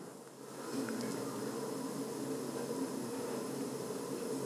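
Quiet room tone: a steady low hum and hiss with no distinct events.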